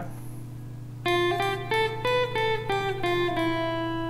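Clean electric guitar picking a slow single-note melody, starting about a second in: about eight plucked notes climbing F, G, A, B and stepping back down A, G, F, E, each ringing into the next. A steady low hum runs underneath.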